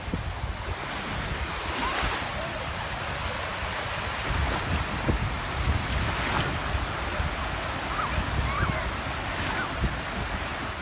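Small wind-driven lake waves breaking and washing onto a sandy shore in a steady wash, with wind gusting on the microphone.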